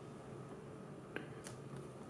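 Quiet room tone with one faint, sharp click a little over a second in and a fainter tick soon after, from a hand tapping and handling a smartphone on a wooden desk.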